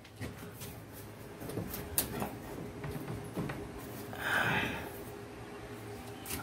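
Handling noise from a bundle of insulated wires being pushed and set into place along a metal ceiling rail: faint rustling and light clicks, with a louder rustle-scrape about four seconds in.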